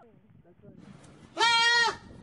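A goat bleating once, loudly, for about half a second near the end.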